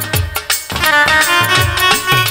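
Instrumental interlude of Bengali folk music: a held reed-like melody over drum strokes that drop in pitch after each hit, about two a second.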